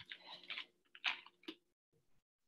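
A person moving about, making faint, short scuffs and clicks, about five in two seconds.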